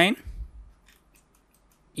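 Several faint, quick clicks of a computer mouse over the first second and a half, as points of a line are placed on screen.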